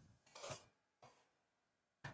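A few faint, isolated computer keyboard clicks: a tap at the start, a short clatter about half a second in, and a single click about a second in.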